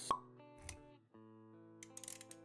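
Intro sound design over music: a sharp pop with a short ringing tone just after the start, a softer low thump about half a second later, then sustained plucked-string-like notes.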